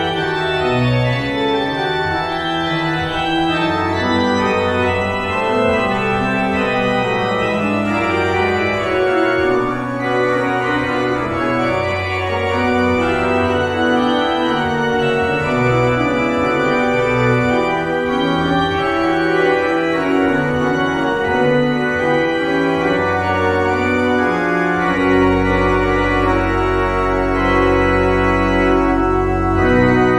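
Church organ played with sustained chords and a moving melodic line; a deep pedal bass note enters about 25 seconds in and holds to the end.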